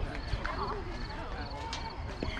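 Background chatter of several voices, not clearly worded. A faint high chirp repeats about three times a second.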